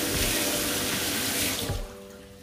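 Kitchen tap running in a steady stream, shut off near the end.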